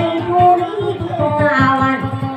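Maguindanaon dayunday song: voices singing long, gliding melodic lines over a plucked string accompaniment on a guitar.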